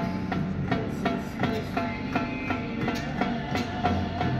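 Latin tropical band music with a steady beat: timbales, congas and güiro over electric bass and keyboard.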